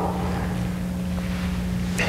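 Steady noise hiss and rumble with a low, even electrical hum running under it.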